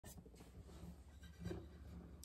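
Near silence: faint room tone with light rustling from an acoustic guitar being handled, and a soft bump about one and a half seconds in.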